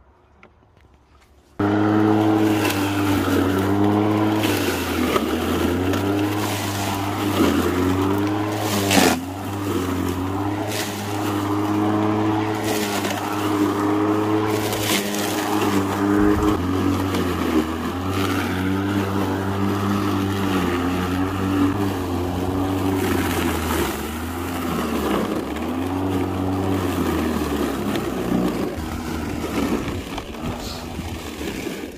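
Makita 36V cordless electric lawn mower starting up about a second and a half in, then running with the motor and blade whirring. Its pitch dips and recovers again and again as the blade cuts into long grass, with one sharp knock about nine seconds in.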